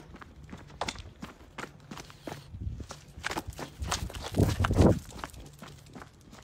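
Footsteps on a hard surface during a dog walk, irregular and unevenly spaced, with a louder low rumble about four and a half seconds in.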